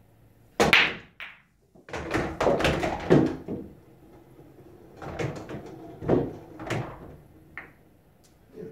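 Nine-ball break shot on a pool table: the cue ball smashes into the rack with a loud crack about half a second in, followed by a few seconds of balls clacking against each other and knocking around the table.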